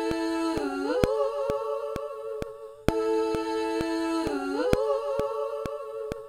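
Stacked a cappella vocal harmonies, hummed and held as a chord, played back from a multitrack session. A phrase of about three seconds plays twice, the voices gliding up together about a second in and again near the end of each pass. A steady click sounds about twice a second throughout.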